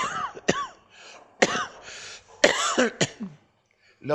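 A man coughing and clearing his throat: about five short, sudden coughs over the first three seconds.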